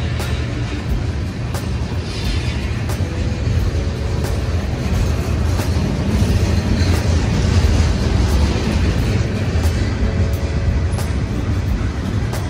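Freight train of tank cars rolling past at close range: a steady, loud rumble of wheels on rail with repeated sharp clicks, swelling slightly midway. Background music runs faintly underneath.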